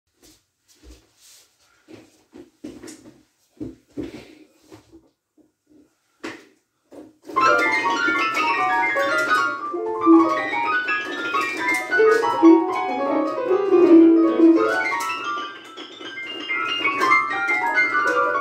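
A few scattered knocks, then about seven seconds in a digital piano starts playing: dense, busy music of many quick notes across the keyboard, easing briefly near the end before picking up again.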